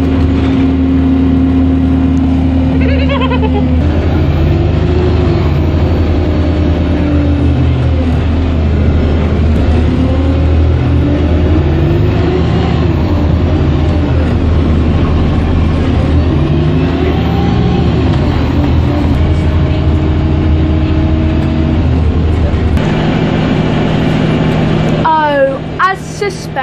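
City bus engine heard from inside the passenger cabin, a steady low drone whose pitch rises and falls as the bus changes speed. Near the end the deepest part of the drone drops away as the bus comes to a stop.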